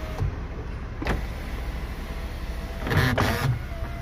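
Electric sunroof motor of a Lexus NX 300h sliding the glass panel, a steady whine over a low hum. The whine cuts out with a click just after the start, another click follows about a second in, and a short louder clunk comes near three seconds before the whine resumes.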